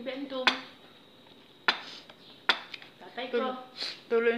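Cutlery clinking against a dinner plate: three sharp clinks about a second apart, with brief bits of voice at the start and near the end.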